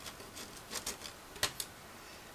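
A few faint, sharp clicks and light taps of small plastic model-kit parts being cut from the sprue and handled, the sharpest about one and a half seconds in.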